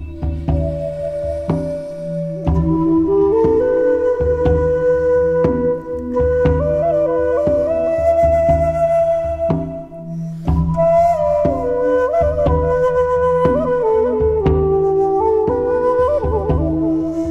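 Japanese shakuhachi, an end-blown bamboo flute, playing a slow melody of long held notes with small pitch bends and slides between them, over a steady low drone and a soft regular beat. The flute breaks off briefly a little before the tenth second, then comes back in.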